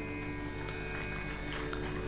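Soft background music: a steady drone of several held notes, with no melody or beat.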